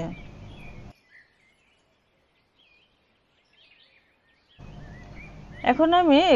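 Mostly near silence, with a faint steady hiss at the start and again shortly before a woman's voice resumes near the end; a few faint high chirps sound in the quiet middle.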